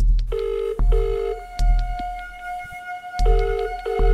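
Telephone ringback tone, the double ring of an outgoing call waiting to be answered: two short rings, about a two-second pause, then two more, over background music with a held note and a bass pulse.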